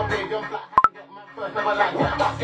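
A hip hop track with rapped vocals breaks off about half a second in. Under a second in come two quick electronic beeps, the second a little higher. The beat and vocals come back in about halfway through.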